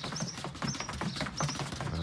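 Rapid light taps of footballs being touched quickly between the feet, with shoes patting on wooden decking as two players do fast ball touches.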